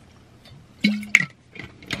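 Drinking from a water bottle: quiet swallowing, then about a second in a brief hum of the voice and a sharp click.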